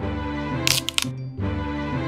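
Children's cartoon backing music, with a quick cluster of sharp cracking sound effects a little under a second in, as of a bamboo stalk being snapped or bitten.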